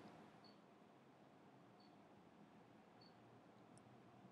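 Near silence: room tone, with a few faint short ticks.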